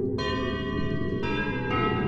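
Bell-like ringing tones, struck three times in quick succession, each held ringing over a dense low rumble.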